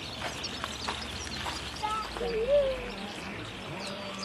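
Outdoor garden ambience: small birds chirping in short scattered calls over a murmur of distant voices, with one louder wavering sound about halfway through.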